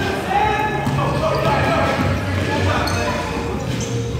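Basketballs bouncing on a hardwood gym floor, echoing in the large hall, amid children's voices.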